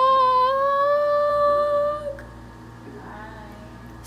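A woman's voice holding one long sung note. It slides up in pitch just before the start, holds steady, then breaks off about two seconds in, leaving quiet room sound.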